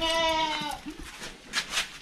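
A single short, steady bleat-like call from a farm animal, lasting under a second and dropping slightly in pitch at its end. It is followed about a second and a half in by a couple of brief scuffing noises.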